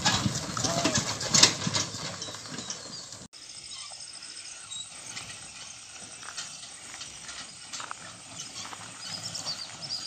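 A pair of bullocks' hooves clopping and a loaded bullock cart rolling over a dirt track close by. About three seconds in it cuts off suddenly to faint, much quieter outdoor sound as a cart approaches from far off.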